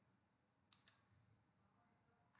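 Two quick, faint computer mouse clicks, a double-click, about a second in, against near-silent room tone.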